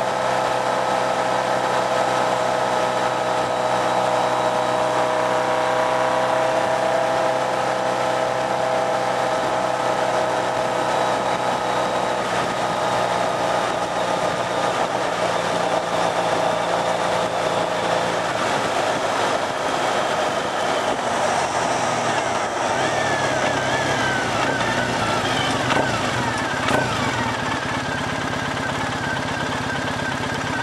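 Motorcycle engine running while riding, heard from the bike, its note falling slowly as it eases off, with wind and road rush. In the second half the engine tones grow fainter under a broader rushing noise.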